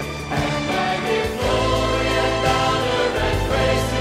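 Christian praise-and-worship music: a group of voices singing together over instrumental backing, with a bass line that changes notes twice.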